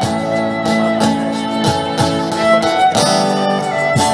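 Live folk band playing an instrumental passage between verses: a violin carrying the melody over strummed guitars.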